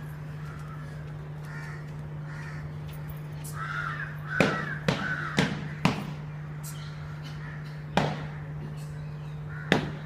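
Crows cawing repeatedly over a steady low hum, with sharp knocks cutting through: four in quick succession about halfway through and two more near the end.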